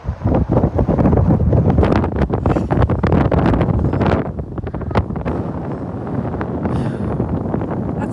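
Wind buffeting the microphone of a camera riding on a slingshot ride's capsule high in the air. It is a loud, rough rush for the first few seconds, then settles to a steadier, lower rush.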